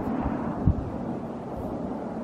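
Wind rumbling on the microphone, a steady low noise, with a couple of brief low thumps in the first second.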